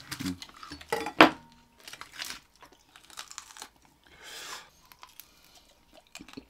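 Crisp-roasted pig's head (maskara ng baboy) being cut and pulled apart on aluminium foil: the crackling skin crunches and tears and the foil crinkles, and a piece of the crunchy nose is then chewed. The sharpest crunch comes about a second in, followed by scattered smaller crackles.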